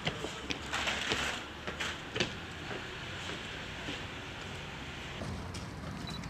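Steady outdoor background noise, with a few brief knocks and a short rustle in the first couple of seconds.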